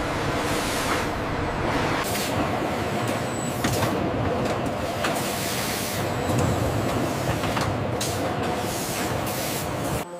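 Steady industrial machinery noise with a low hum, repeated hissing bursts and a few sharp clicks.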